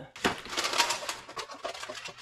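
Kitchen items clinking and rattling as they are shifted around in a plastic storage tote, busiest in the first second and a half.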